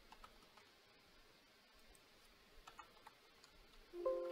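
Faint clicks of computer keyboard typing: a few scattered keystrokes just after the start and a quick cluster near the end, over near-silent room tone.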